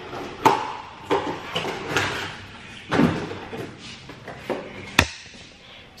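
A series of knocks and thumps, roughly a second apart, from objects being handled and set down, with a sharp click near the end.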